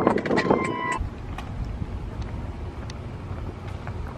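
Car noise with wind on the microphone and a brief beep in the first second, then a quieter, low, steady rumble, as of a car rolling slowly or idling.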